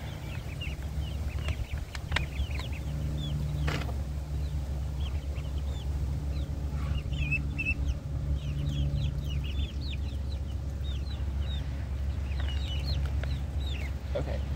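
Chickens clucking and peeping, with many short high chirps coming in quick runs, over a steady low rumble. A couple of sharp clicks in the first few seconds.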